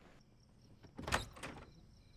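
A glass-paned door being opened: a quick cluster of latch clicks and knocks about a second in, with a short greeting spoken over it.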